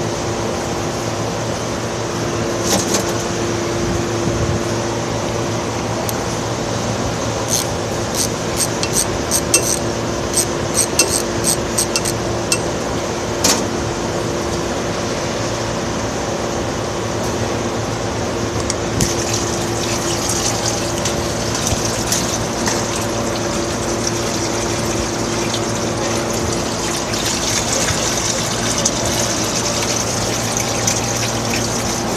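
Engine oil pouring out of a Ford F-150's oil pan drain hole into a drain container, a steady hissing splash that sets in about two-thirds of the way through, once the drain plug is out. Before it, a run of light, quick clicks, over a steady shop hum.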